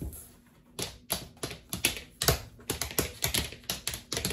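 Homemade coin taps, coins duct-taped to the soles of Converse sneakers, tapping on a thin Masonite board: quick, irregular clicks that start about a second in.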